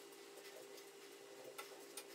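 Near silence: faint steady room hum, with two soft clicks near the end.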